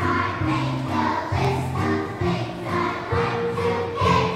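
Children's choir singing a song with musical accompaniment, the notes held in a steady rhythm.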